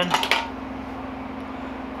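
A short scraping clatter as a gas canister is slid out of a metal backpacking-stove cup, then a steady low hum of room air conditioning.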